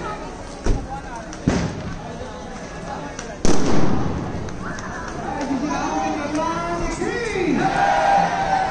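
Firecrackers going off: two sharp bangs in the first second and a half, then a third, much louder bang about halfway through with an echoing tail. People's voices run underneath and grow in the second half.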